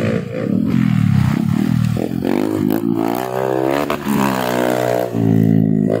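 Honda CRF150 dirt bike's single-cylinder four-stroke engine revving hard, its pitch climbing and dropping several times as the throttle is worked.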